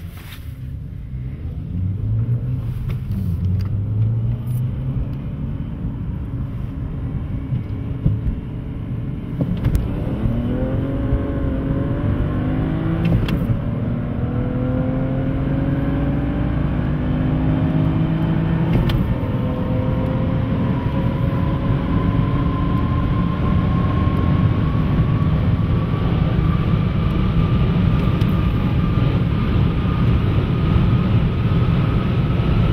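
Turbocharged inline-six BMW 335i engine heard from inside its cabin during a full-throttle roll race, with road and wind noise: a steady drone for about ten seconds, then the engine note climbing hard under acceleration, broken by gear changes about thirteen and nineteen seconds in, and getting louder toward the end.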